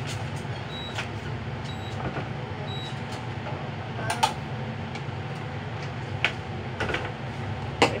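Plastic lunch box and kitchenware knocking and clicking now and then as they are handled and taken down from a wall cupboard, the sharpest knock near the end. A steady low hum runs underneath.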